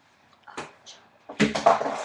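Mostly quiet with a couple of faint brief noises, then about a second and a half in a girl's breathy vocal sound, a huff or exhale, just before she speaks.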